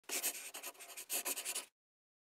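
A short run of rapid, scratchy strokes in two bursts, the second starting about a second in, then cutting off suddenly.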